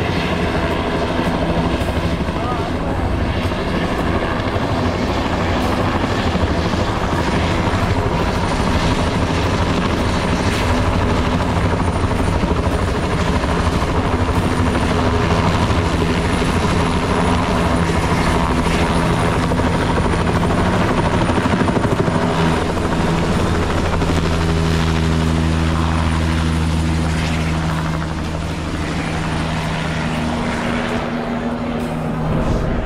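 Helicopter rotor and turbine running close by, steady and loud with a fast rotor pulse. Late on the low hum grows stronger and steadier as the helicopter lifts off.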